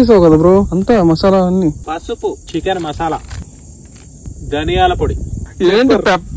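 Crickets chirring, a steady high trill that runs on under a man's voice talking, which is the loudest sound.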